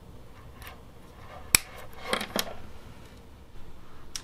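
Small hard clicks and clatter of a USB cable's two metal Type-A plugs being handled against each other: one sharp click about a second and a half in, then a few quicker clicks just after two seconds.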